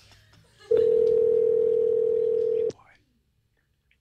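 Telephone ringback tone from an outgoing call: one steady ring of about two seconds, the sign that the called line is ringing and not yet answered.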